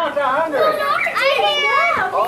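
A group of young children shouting and calling out excitedly, several high voices at once, with one long high-pitched shout in the second half.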